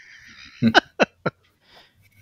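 A man laughing in three short bursts, starting a little over half a second in.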